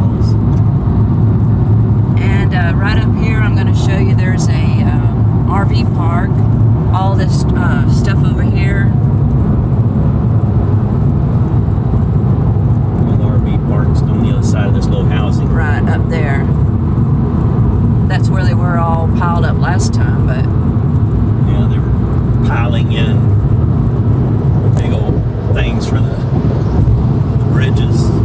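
Steady, low road and engine noise inside a Chevy Spark's cabin at highway speed, with voices talking over it at times.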